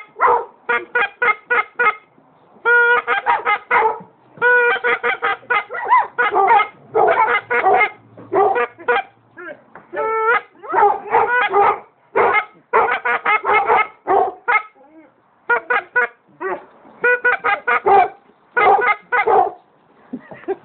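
A goose call blown in fast runs of short honks and clucks, about four notes a second, with brief pauses between the runs.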